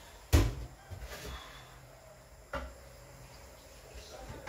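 Knocks and clunks of a glass and bottle handled at a kitchen sink and counter: one sharp knock about a third of a second in, softer ones around a second in, and another knock about two and a half seconds in.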